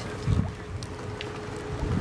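Wind buffeting the microphone, with a low rumbling gust about a third of a second in, over a faint steady tone.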